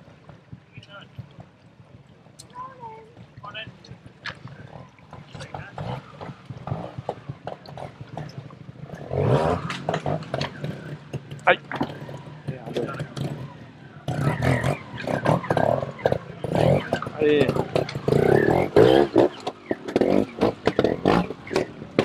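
A trials motorcycle engine running over a rocky section, with spectators' voices around it; louder from about nine seconds in.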